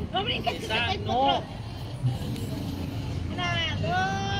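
Voices of people nearby talking, then a long drawn-out call near the end, over a steady low rumble of traffic.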